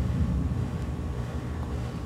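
Steady low rumble of background room noise with faint hiss and a light hum, with no distinct events.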